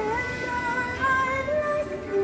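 Life-size animated Sally figure playing a slow song in a woman's singing voice through its built-in speaker, with long held notes that waver and glide.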